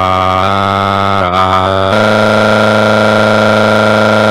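A synthesized text-to-speech voice drawing out one long vowel on a flat, monotone pitch, shifting pitch slightly about half a second, a second and two seconds in.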